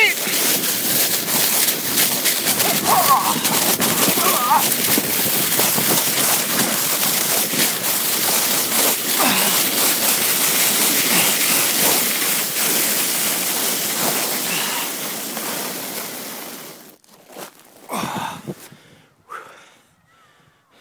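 A sled sliding down a snowy hill: a loud, continuous scraping hiss of the sled over crusty snow and grass, mixed with wind rushing past the microphone. It stops suddenly about 17 seconds in as the sled comes to rest.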